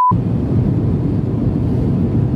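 A brief test-tone beep at the very start, then the steady low rumble of cabin noise inside an airliner.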